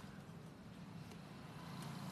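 Steady low background rumble with a couple of faint ticks.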